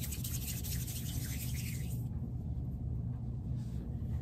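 Soft rubbing of hands rolling a small piece of polymer clay into a ball between the palms, fading out about halfway through, over a steady low room hum.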